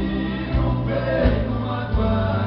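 Live acoustic Brazilian sertanejo-style music: several acoustic guitars strummed while men's voices sing together, over a steady low beat about every three-quarters of a second.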